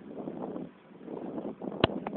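Wind buffeting a phone microphone from a moving vehicle, in uneven gusts that drop briefly about a second in. A single sharp click sounds near the end.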